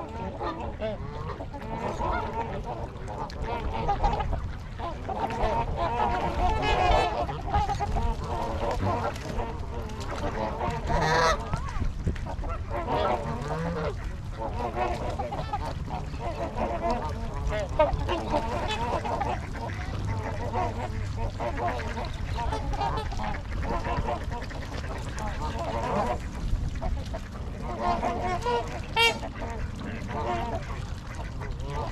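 A mixed flock of Canada geese and trumpeter swans honking continuously, with many calls overlapping, and a few louder, higher-pitched calls about eleven seconds in and again near the end.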